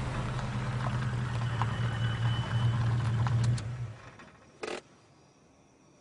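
Car engine running with a steady low hum that fades away about four seconds in. A brief sharp noise follows, then near silence.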